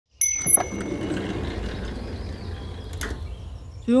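A short bright ding with a few sharp clicks right at the start, then a low rumbling background that slowly fades, with one more click about three seconds in.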